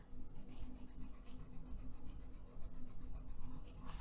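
White Caran d'Ache Luminance wax-based coloured pencil rubbing over a blue pencil layer on paper: quiet, irregular scratching strokes as it burnishes and lightens the colour.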